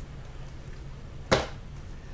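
A single sharp knock about a second and a half in, over a low steady hum.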